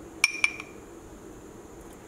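Two light metallic clinks about a fifth of a second apart, each with a short high ring: a set of stainless-steel measuring spoons being handled.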